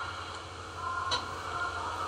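A pause in a man's lecture, filled by steady low electrical hum and room noise, with a faint click just over a second in.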